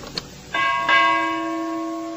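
Subscribe-animation sound effects: two quick clicks, then a bell chime struck twice about a third of a second apart and ringing on, slowly fading.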